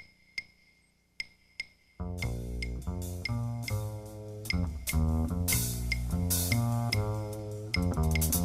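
Claves clicking in a sparse, uneven pattern. About two seconds in, a plucked upright bass comes in loudly with a repeating line of low notes under the continuing percussion, which adds bright shimmering strokes later on.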